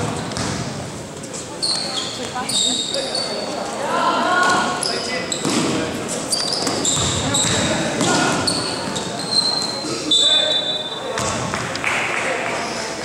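Basketball game sounds in a large gym: sneakers squeak in many short, high squeals on the court floor while a ball bounces and players' voices call out, all echoing in the hall.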